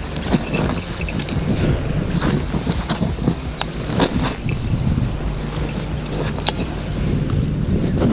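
Wind rumbling on a body-worn action camera's microphone, with scattered small clicks and handling noise as a baitcasting reel is cranked to retrieve a lure.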